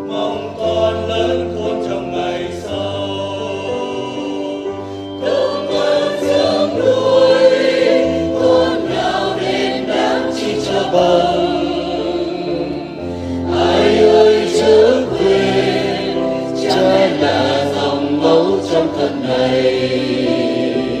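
Choir singing a Vietnamese Christian hymn; the singing grows louder and fuller about five seconds in.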